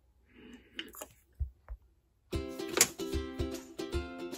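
Near silence with a few faint clicks, then background music with plucked strings starts a little over halfway through.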